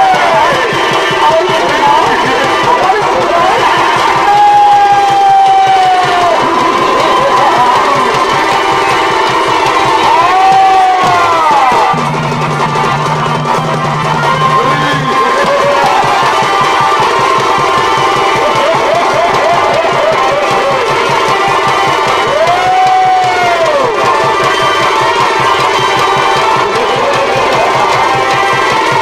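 Purulia Chhau dance music: fast, steady drumming under a wailing shehnai melody that holds notes and bends up and down in pitch, heard through loudspeakers.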